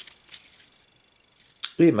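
A stack of Pokémon trading cards handled in the hands: a brief rustle of card stock sliding against itself at the start and a light flick about a third of a second in, then near quiet until a man's voice starts near the end.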